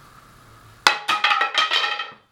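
A wooden rod dropped onto a ceramic tile floor: a sharp hit just under a second in, then a rapid ringing clatter as it bounces and rattles for about a second.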